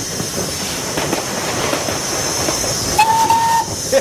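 Steam locomotive running, heard from the footplate as a steady hiss and rattle. About three seconds in, a short steam whistle blast sounds as one steady note lasting about half a second.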